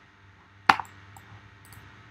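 A computer keyboard key struck once with a sharp click about two-thirds of a second in, followed by a few faint ticks, over low room tone.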